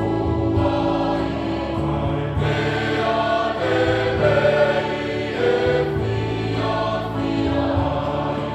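Mixed men's and women's church choir singing a hymn in parts, in long held chords that change every second or two.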